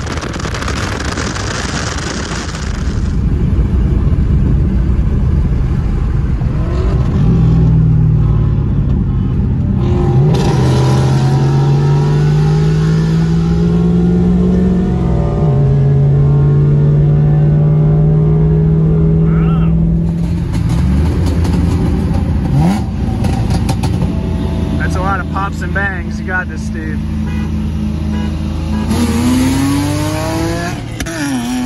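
Wind buffeting the microphone for the first few seconds, then a car engine heard from inside the cabin, accelerating hard through the gears. Its pitch climbs, drops at each upshift (twice in quick succession), holds steady at speed, then climbs again near the end.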